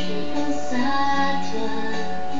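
A young woman singing over a backing track of sustained chords. She holds a note that bends and slides in pitch about halfway through.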